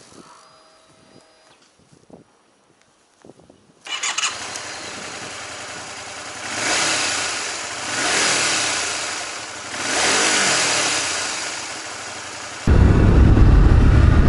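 Honda VTR250 V-twin motorcycle engine coming in sharply about four seconds in, its note rising and falling three times as the bike accelerates through the gears. Near the end a louder, deep wind rumble on the helmet microphone takes over.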